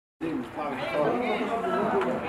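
Several voices talking and calling out over one another, starting just after a brief silence.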